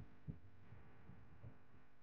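Near silence: a faint low rumble with two soft low thumps.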